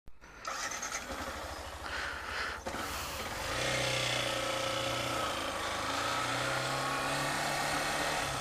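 Motorcycle engine idling with a low, even pulse, then pulling away about three and a half seconds in and running at a steady low speed, heard from on the bike.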